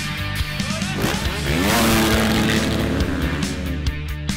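A pack of motocross bikes accelerating hard, their engines rising in pitch and loudest about two seconds in, over rock music.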